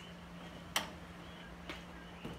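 Quiet low steady hum with one sharp click about three quarters of a second in and a fainter tick later.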